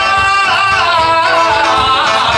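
Live band music with a singer holding long, gliding notes into a microphone over a steady beat.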